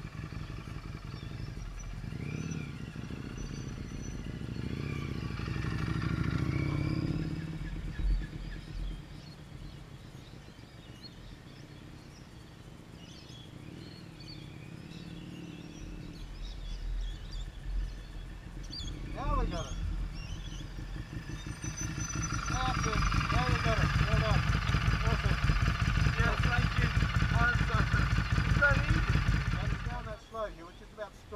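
Learner motorcycle engine running during a slow cornering exercise. It grows louder for the last eight seconds or so.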